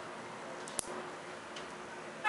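One sharp click a little under a second in: small silver neodymium magnetic balls (Nanodots) snapping together as pieces of the shape are handled, over a faint steady background hiss.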